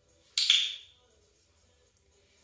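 A handheld training clicker clicking once, a sharp double-edged click with a brief ringing tail, about a third of a second in. It marks the moment the puppy's rump reaches the floor in a sit.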